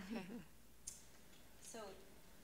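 Faint snatches of voice at the start and near the end, with one sharp click just under a second in.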